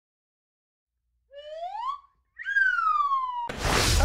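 Intro sound effect: a short whistle rising in pitch, a brief pause, then a longer whistle that falls away, in the shape of a wolf whistle. A loud whoosh follows near the end as the transition.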